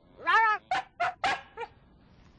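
Small white terrier barking on the "speak" command: a quick run of about five short barks, the first a little longer and the last faint.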